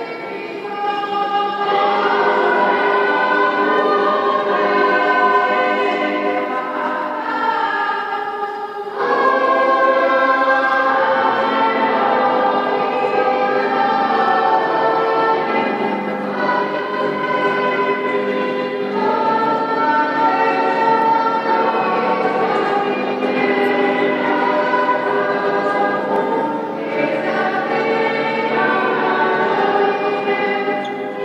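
Choir singing a hymn in a reverberant church, in long held phrases with brief breaks between them.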